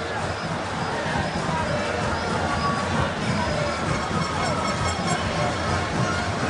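Steady din of a stadium crowd during a football match, many voices blended together with tuneful sounds mixed in.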